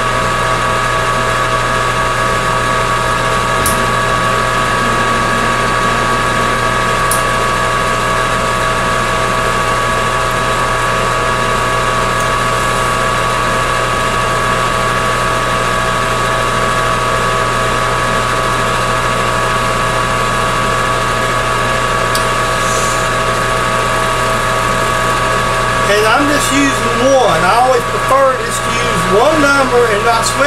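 Metal lathe running at a steady speed for single-point threading, its spindle and gearing giving a constant whine of several fixed tones over a low hum. A couple of faint clicks come in the first several seconds.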